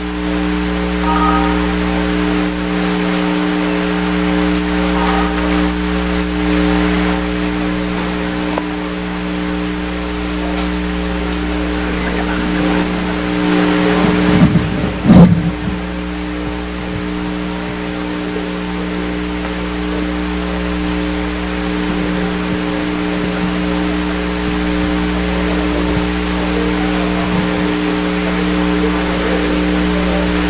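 A steady electrical hum with room noise, a constant low buzz that does not change. About halfway through, a few loud knocks and scrapes are heard as a table is set down on the floor.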